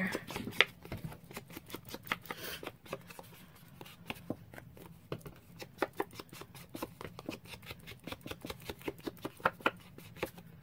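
Ink blending tool dabbed and rubbed along the edges of a cardstock card: a run of light, irregular taps and scuffs, several a second.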